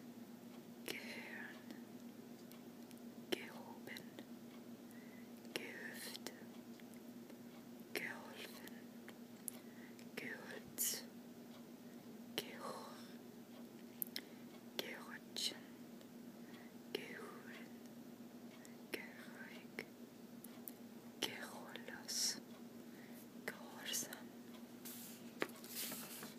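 Soft whispering in short separate words or phrases, with pauses between them and a few small mouth clicks.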